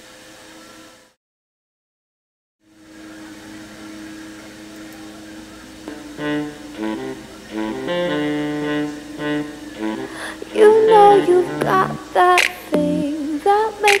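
A pop song played through a small pocket mirror Bluetooth speaker, picked up by a microphone close in front of it. The music cuts off about a second in, silence follows briefly, then the song starts again with held synth tones, a beat coming in, and a woman's singing from about ten seconds in; this second pass has its bass boosted in editing.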